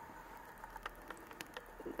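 Faint room tone with a few light, scattered clicks from small handling noises.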